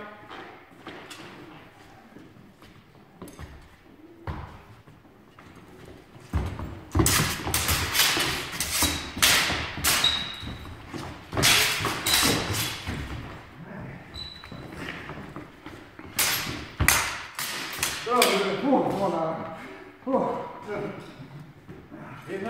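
A fencing exchange with steel training swords: after a quiet start, about ten seconds of quick footwork thudding on a wooden floor and blades clashing, with several short metallic rings. People talk near the end.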